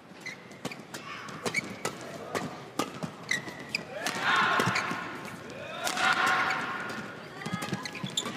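Badminton shuttlecock struck back and forth by rackets in a doubles rally: a run of sharp, quick hits. The arena crowd's noise swells twice during the rally.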